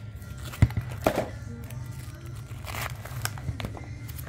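Quiet background music, over which the plastic sleeves of a postcard ring binder rustle and crinkle as its pages are handled and turned, with a sharp click a little over half a second in and another about a second in.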